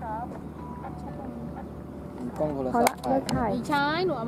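People talking in short bursts, with a quieter pause in the middle, over a steady low background hum.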